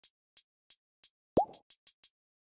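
Opening of a no-melody trap beat: sharp hi-hats ticking about three times a second, then one quick rising "plop" sound effect about one and a half seconds in, after which the hi-hats come faster.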